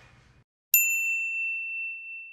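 A single high, bell-like ding about three-quarters of a second in, ringing on and fading away over nearly two seconds.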